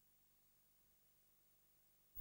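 Near silence: faint background hiss.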